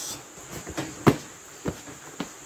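A few short knocks and clicks from handling a produce box as its lid is closed over packed jackfruit, the sharpest about a second in. Behind them, a steady high-pitched chirring of insects.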